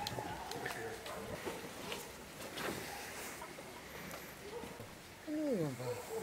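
Indistinct voices at a distance, with scattered clicks and knocks, then one loud falling vocal sound near the end.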